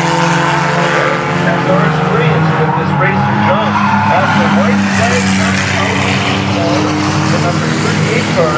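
Several old cars racing round a paved oval track, their engines running together in a steady, layered drone.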